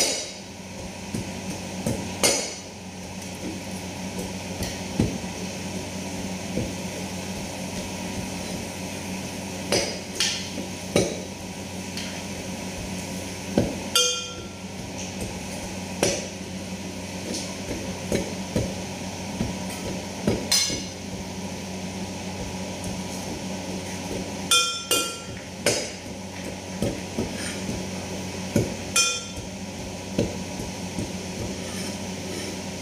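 Pestle pounding in a brass mortar: an irregular series of knocks, the louder strikes ringing with a metallic tone.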